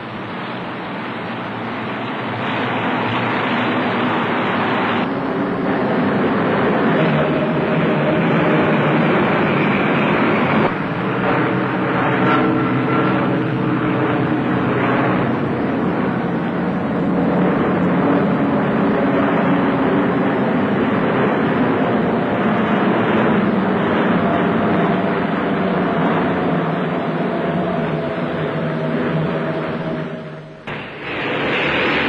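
Twin radial piston engines of a Martin Maryland bomber droning in flight, growing louder over the first few seconds and then holding steady, their pitch wandering slowly, heard through a dull old film soundtrack.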